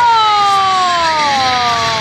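A long, drawn-out shout of encouragement during a heavy deadlift pull. Its pitch falls slowly over about two seconds, and a second voice joins about a second in.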